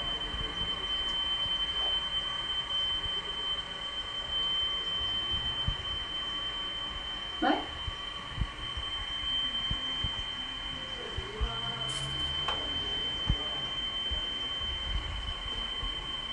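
Quiet small-room tone under a steady high-pitched whine, with a short vocal sound about halfway through.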